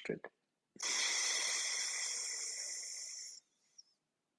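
A man breathing out through his right nostril in alternate-nostril breathing (anulom vilom pranayama): one long, even, airy exhale starting about a second in, slowly fading over about two and a half seconds, then stopping.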